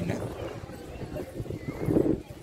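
Footsteps of people walking on brick paving, an irregular series of low thumps, with faint voices in the background.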